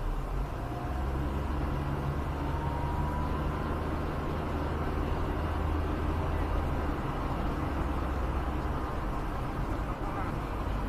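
Car engine and tyre noise heard from inside the cabin as the car drives slowly along a concrete road, picking up speed.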